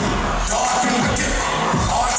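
Live hip-hop music played loud through a concert PA, with a heavy, thumping bass beat.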